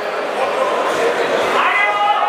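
Voices in a large hall, with a short, high, rising shout near the end.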